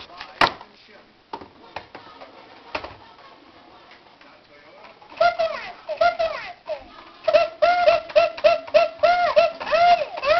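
Plastic toy telephone being played with: a few clicks of its keys in the first half. From about halfway, the toy gives out a quick run of short electronic sung notes, each bending up and down in pitch.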